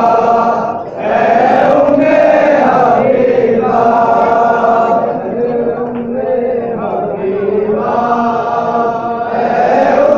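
Male voices chanting a noha, a Shia mourning lament, in long drawn-out sung phrases, with a short break about a second in.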